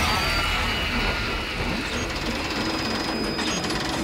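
Movie sound design for a spinning alien sphere weapon: a steady mechanical grinding rumble with faint high whining tones over it, and a few short falling whines near the start.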